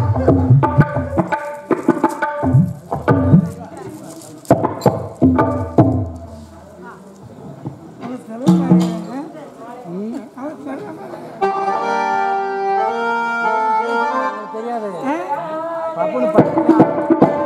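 A male stage performer's voice rings out through a microphone over hand-drum strokes for the first six seconds. After a quieter stretch, a harmonium plays a held, steady melody for about three seconds, starting a little past the middle.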